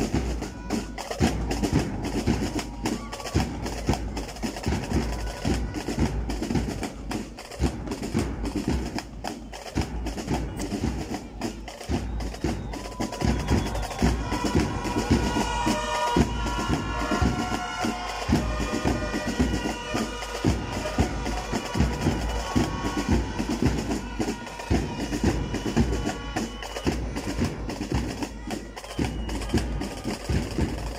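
Percussion music: a fast run of sharp, clicking strikes over drums. A high melody joins in from about halfway through and drops out near the end.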